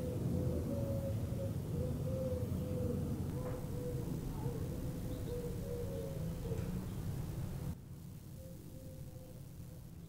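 Workshop room tone: a steady low hum and background noise with a faint wavering tone above it, recorded by a small camera or phone microphone with nobody speaking. The level drops suddenly to a quieter version of the same noise near the end, where one test recording gives way to another.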